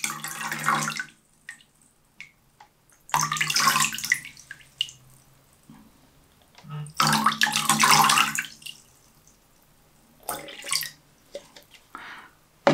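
Water poured from a plastic cup over a pane of glass, splashing down into a plastic tub below, in three pours of a second or two each, with a few short drips and splashes near the end.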